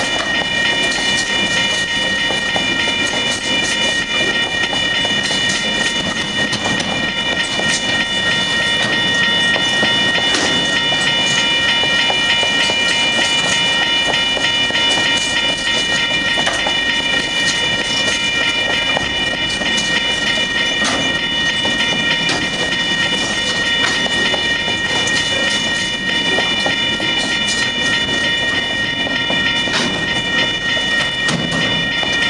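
Freight train of container wagons rolling steadily past, its wheels clicking over the rail joints. A set of steady high-pitched tones sounds over the rumble throughout.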